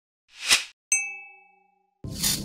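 Logo sound effect: a short whoosh that swells and stops, then a bright chime struck once that rings and fades away within about a second.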